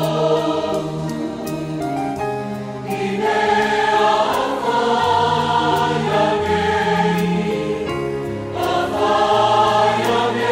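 Church choir singing a gospel hymn in several-part harmony, holding chords that change about every second, over a faint regular tick.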